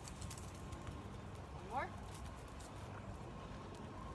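Faint footsteps of a person and a leashed dog walking on an asphalt road, over a steady low outdoor rumble. A woman says "one more" about halfway through.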